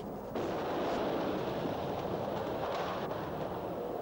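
Steady rushing noise of a jet aircraft in flight, starting about a third of a second in.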